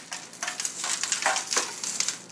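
Dry spice rub being shaken from a small container onto a pork shoulder in a disposable aluminum foil pan: an uneven, dry rattling patter in several pulses.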